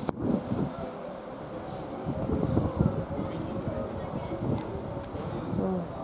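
Low, uneven rumble of a departing Class 390 Pendolino electric train as it draws away, with a sharp click at the start and faint voices.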